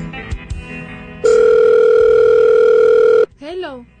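A loud, steady electronic telephone tone held for about two seconds, then cut off suddenly, following the tail of guitar music.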